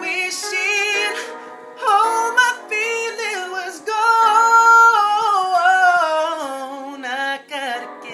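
A man singing an R&B ballad, with sweeping melismatic runs and a long held note about four seconds in.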